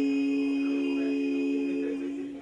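Three women's voices singing a gospel song a cappella in close harmony, holding one long sustained chord that ends right at the close.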